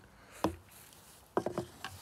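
The last of the beer being poured from an aluminium can into a glass, then a few light knocks as the empty can is set down on a hard surface.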